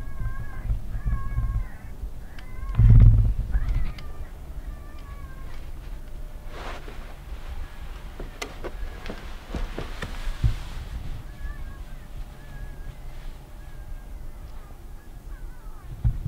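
Electronic predator caller playing a rabbit distress sound: repeated short, wavering, high-pitched squeals. A low rumble stands out about three seconds in.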